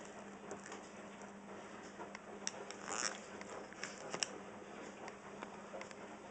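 Table knife spreading chicken-and-stuffing filling on a slice of bread: faint soft scrapes and small clicks, busiest about halfway through, with a brief louder scrape about three seconds in.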